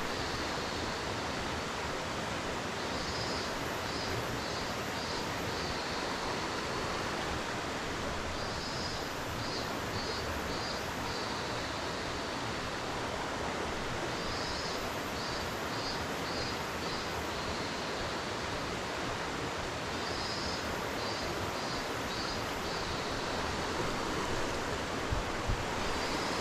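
Steady rush of flowing stream water. A high chirping call sounds over it in short pulsed runs, repeating about every five to six seconds, and there are a couple of soft knocks near the end.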